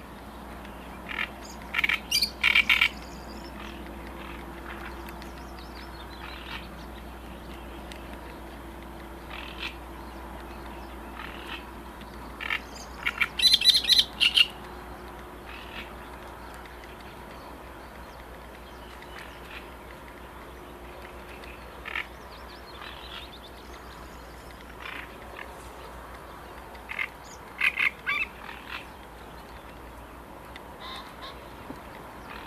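Rapid, rattling animal calls in three short bursts, about two, thirteen and twenty-eight seconds in, over a steady low background rumble.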